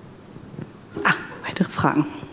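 A few short voice sounds close to a microphone, in two brief bursts about a second in and near the end, with sharp handling noise on the mic. These are not words.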